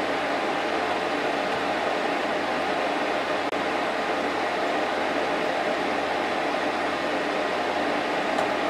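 Steady, even noise of lab-equipment cooling fans, with a very brief dropout about three and a half seconds in.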